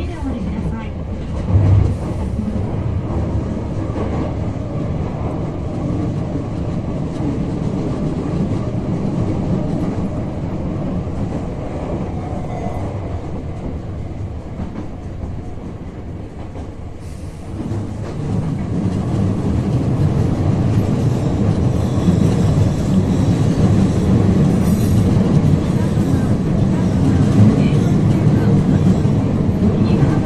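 Running noise of a Hankyu commuter train heard from inside the car in a subway tunnel: a steady rumble of wheels on rail. It grows louder and fuller a little past halfway through.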